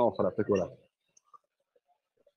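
A man's speaking voice for just under the first second, then a pause of near silence broken by a few faint, short clicks.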